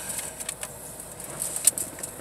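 A few short clicks and rustles of handling, the sharpest about three-quarters of the way through, with a faint hiss beneath.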